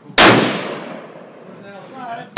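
A single loud rifle shot about a quarter second in: a sharp crack followed by an echoing tail that dies away over about a second.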